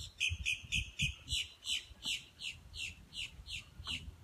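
A bird calling, a quick run of short chirps that each slide downward in pitch, about four a second.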